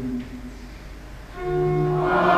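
Electronic keyboard sounding a steady held chord that comes in about one and a half seconds in, the introduction to the choir's hymn verse. A man's speech trails off just before it.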